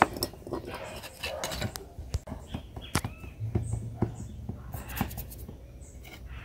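Plastic bag crinkling and rustling as it is handled, in scattered light clicks and crackles.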